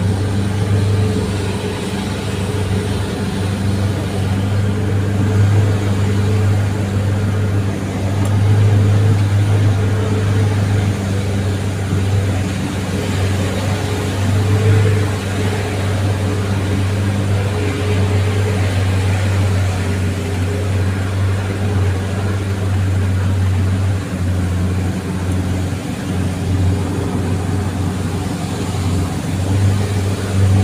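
A vehicle's engine running steadily under load while driving uphill, heard from inside the cab as a continuous low drone that swells slightly now and then.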